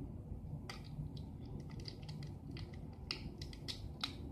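Scattered light clicks and taps of small plastic parts being handled, irregular and growing busier in the second half, over a steady low hum.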